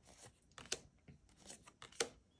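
Tarot cards being handled and flipped through by hand: a few quiet, short clicks and rustles as cards slide off the stack.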